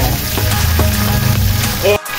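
Flour-dusted milkfish sizzling as it fries in hot oil in a pan, with background music playing over it.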